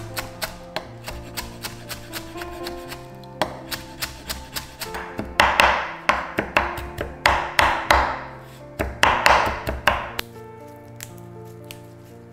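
Chef's knife chopping fresh coriander on an end-grain wooden cutting board: quick knife strikes at about four a second, turning into louder, denser rushes in the middle and stopping about ten seconds in. Soft background music plays throughout.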